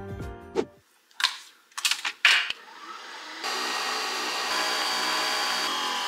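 Background music ends within the first second, followed by a few short clicks and knocks, then a coffee machine runs with a steady motor whirr as it brews coffee into a mug.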